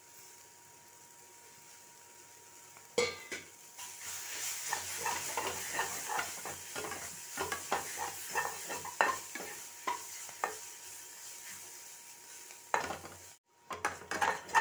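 Onion and spice masala frying in a hot kadhai while a spatula stirs it, with a sizzling hiss and repeated sharp scrapes and knocks of the spatula against the pan. It is faint for the first three seconds, then a knock, and the sizzle and stirring run on until a brief cut to silence near the end.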